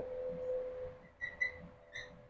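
Marker squeaking in a few short high chirps on a whiteboard while writing, over a faint steady tone.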